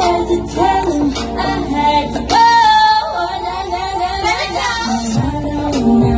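Female pop vocal group singing into handheld microphones over backing music.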